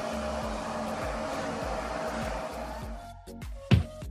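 Wattbike's air-resistance flywheel whooshing steadily during an all-out sprint, over a steady music beat. About three seconds in the whoosh cuts off and music carries on, with one sharp, deep, falling bass hit near the end.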